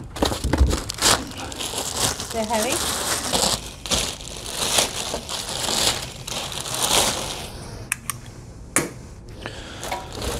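Plastic packaging wrap crinkling and rustling in irregular surges as a plastic-bagged round griddle top is handled and pulled out of a cardboard box.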